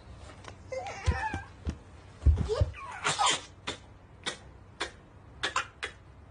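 A toddler's short, wavering vocal sounds, mixed with a few soft thumps, followed by a string of sharp clicks in the second half.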